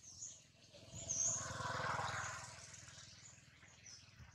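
Birds chirping in the background. About a second in, a louder, low, rough noise swells for over a second and then fades.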